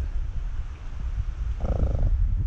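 Wind rumbling on the camera's microphone, a steady low buffeting with irregular crackle, with a brief muffled sound near the end.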